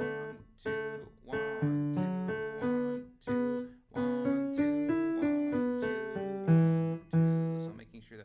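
Digital piano playing a simple two-handed sea chantey in E minor, in cut time, a melody over low bass notes in short phrases. It closes on two long held low notes that die away just before the end.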